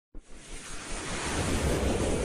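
A whoosh sound effect for an animated logo intro: a surging rush of noise that starts at once and swells louder.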